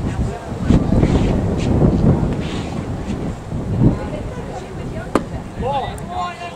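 Wind buffeting the microphone, with one sharp pop about five seconds in: a baseball pitch landing in the catcher's mitt.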